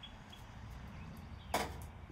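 A single short, sharp knock about one and a half seconds in, over a quiet, steady outdoor background.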